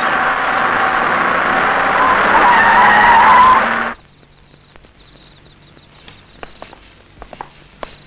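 Jeep driving in and skidding to a halt on a dirt surface: a loud rush of engine and tyre noise with a brake squeal near the end. It cuts off abruptly about four seconds in, and only faint scattered clicks follow.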